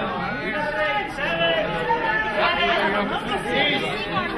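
Crowd chatter: many people talking over one another at once, calling out numbers to each other.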